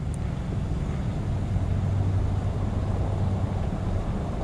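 Steady low mechanical hum over a low rumble, holding one pitch throughout.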